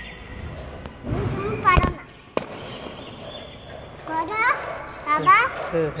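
A small child's high-pitched wordless vocalizing: a short gliding cry about a second in, then a run of rising and falling calls from about four seconds. A single sharp click falls between them.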